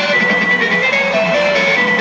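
Rock band playing live through a large festival PA, heard from the crowd: amplified electric guitars carry a sustained melodic line over the band.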